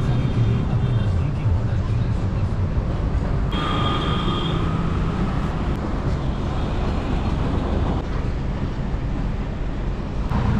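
Steady low outdoor rumble, with a brief high-pitched tone about three and a half seconds in that lasts about a second.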